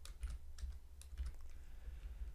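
Typing on a computer keyboard: an irregular run of separate keystroke clicks as a line of code is typed.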